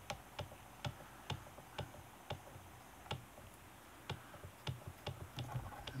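Light, evenly spaced ticking, about two short ticks a second.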